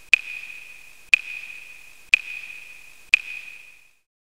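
A bell-like 'ding' sound effect, struck four times about a second apart, each a sharp hit followed by a single high ringing tone that fades away, one for each line of text appearing on the title card.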